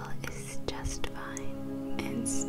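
Soft meditation music of steady held tones, with a whispering voice over it and a few faint clicks.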